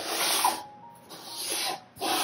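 Cardboard album boxes sliding against each other and across the table as they are shuffled by hand: two scraping rubs, the second about a second in.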